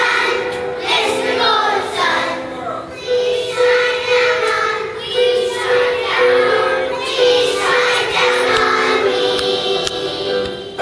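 A group of young children singing a song together in unison, in phrases with held notes.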